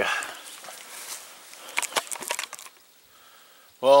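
Handling noise from a hand-held camera being turned around: rustling, with a short run of sharp clicks about two seconds in, then a quiet moment.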